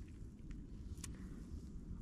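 Faint low background rumble with two small clicks, one about half a second in and one about a second in.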